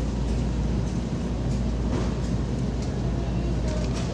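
Steady low rumble of supermarket ambience, with a few faint clicks.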